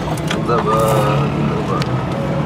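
Vehicle engine running steadily with road noise, heard from inside the moving vehicle, with voices mixed in.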